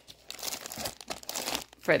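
Thin plastic bag of lavash flatbread crinkling as it is picked up and handled, an irregular rustle that starts about a third of a second in.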